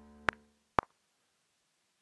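The last sustained chord of a software grand piano played from a USB MIDI keyboard, dying away, with two metronome clicks half a second apart. Then silence.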